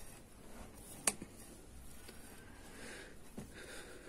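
Faint handling of metal knitting needles and yarn, with one sharp click about a second in and a softer one near the end.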